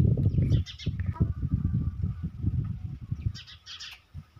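Small birds chirping in short bursts, about a second in and again near the end, over an uneven low rumble that is loudest at the start.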